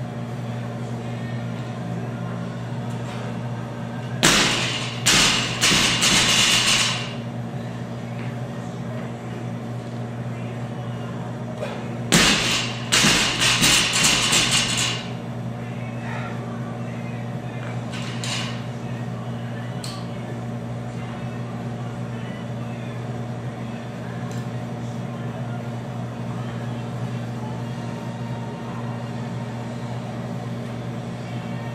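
A 135 lb plate-loaded barbell set down or dropped on the floor during snatch reps, twice about eight seconds apart. Each time there is a sharp bang followed by a few seconds of plates clattering and rattling, over a steady low hum.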